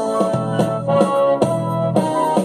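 Instrumental music of a civic anthem played on an electronic keyboard, a run of sustained chords with no singing.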